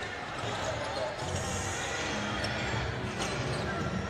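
Basketball being dribbled on a hardwood court during live play, over a steady murmur of arena crowd noise.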